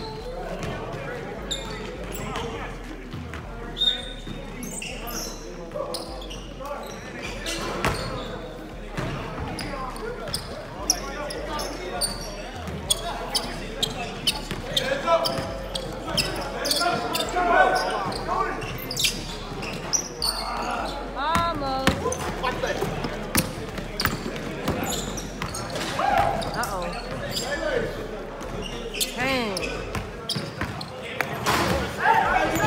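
Basketballs bouncing on a hardwood gym floor during a pickup game, in a reverberant hall, with players' voices calling out over the play.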